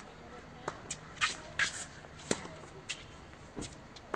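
Tennis balls being hit and bouncing on a court: several sharp knocks at irregular spacing, with a couple of short scuffing sounds between them.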